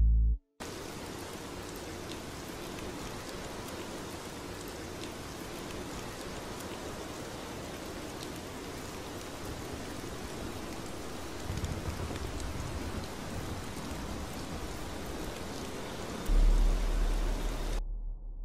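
Steady rain falling, an even hiss of rainfall. A deep low rumble comes in near the end.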